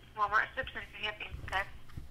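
A voice speaking over a phone line on speakerphone, thin and cut off in the treble: the other end of the call answering.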